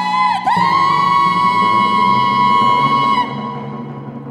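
Music from a vocal-theatre piece: a long high held note that slides up into pitch about half a second in and stops after about three seconds, over a low sustained drone.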